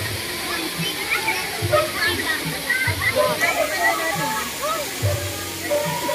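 Steady rush of water from a spring-fed pool and waterfall, under many overlapping voices of people and children calling and chatting around the pool.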